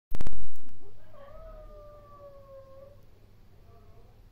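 A loud burst of sharp clicks right at the start, then a domestic cat giving one long, drawn-out meow that sags slightly in pitch and fades out about three seconds in.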